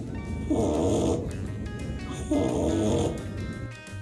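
A small sleeping puppy snoring, two long snores about two seconds apart.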